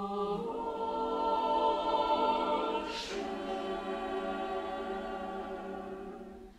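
A cappella choir singing slow, sustained chords in several parts, swelling and then easing. A brief hissing consonant is sung together about halfway through.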